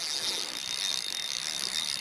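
Spinning reel being cranked, its gears whirring steadily as line is wound in on a hooked bass.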